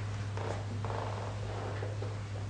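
A steady low hum, with faint rustling of photo cards being handled on a table.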